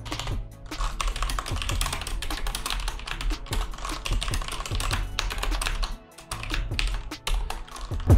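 Typing on a computer keyboard: a fast run of key clicks with a short pause about six seconds in, over background music.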